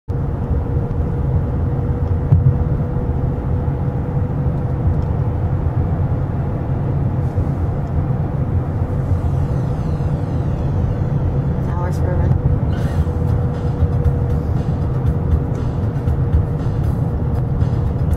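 Steady low rumble of engine and tyres heard from inside a moving car, with a constant hum running through it.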